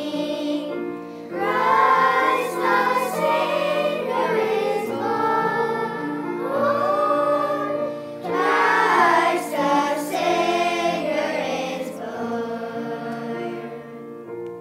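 A choir of adults and children singing a song with instrumental accompaniment, the sound tailing off at the very end.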